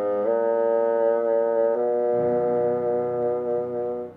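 Bassoon playing a slow melody in long held notes, moving to a new note twice. A lower accompanying part comes in about halfway through, and the bassoon stops right at the end.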